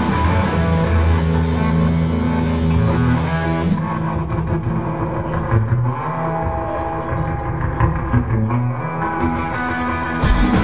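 Live electric guitars playing held, ringing chords with little or no drumming, the notes changing about four seconds in.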